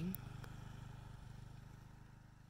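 A low, steady mechanical hum with a fast, even flutter, slowly fading away.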